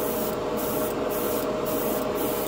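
Airbrush spraying enamel paint onto a plastic spoon: a steady hiss of air and paint, over a steady background hum.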